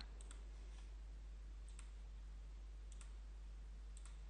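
Several faint computer mouse clicks, some in quick pairs, as a chart object's menu and settings dialog are worked through, over a steady low hum.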